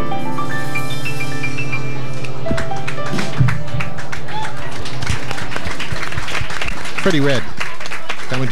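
Jazz piano with a held low bass note playing the last phrases of a tune, its notes ringing out, followed by audience applause from about three seconds in; a man's voice starts over the applause near the end.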